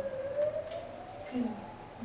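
A siren wailing: one steady tone that slowly climbs in pitch, with a single spoken word heard over it.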